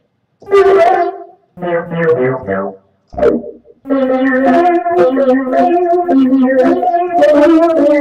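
Korg Wavestation software synthesizer sounding its 'Gremlins 1' patch, played from a Casio CT-S200 keyboard over MIDI. Two short phrases of notes come in the first three seconds, then from about four seconds in a longer phrase of held chords with the notes moving over them.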